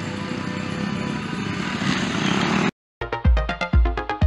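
Motocross motorcycle engines running on the dirt track, cut off suddenly about two and a half seconds in. After a brief silence, electronic music with a heavy kick drum starts, about two beats a second.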